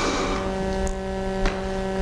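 A steady, even-pitched hum with several overtones, held for about two seconds, with one faint click about one and a half seconds in.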